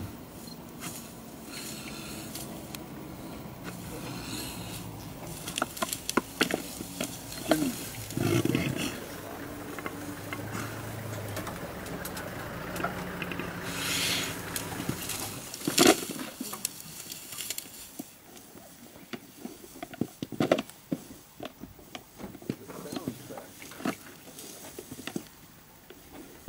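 Two Cape buffalo bulls fighting, giving low drawn-out bellows and grunts through the middle, with scattered sharp knocks.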